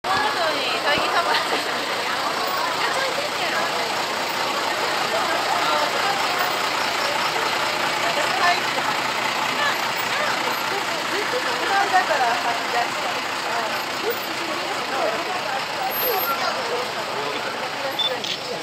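A small truck's engine running steadily under many voices talking at once.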